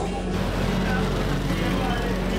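Busy street sound: motorbike and car engines running, with people's voices, over background music.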